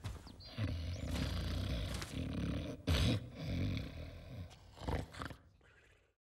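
The Gruffalo's deep, rumbling snoring in several long pulses. The loudest comes about three seconds in, and it fades out near the end.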